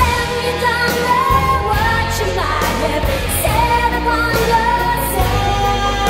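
Pop ballad recording with a female lead voice holding long, gliding notes over a full band backing of synths and drums.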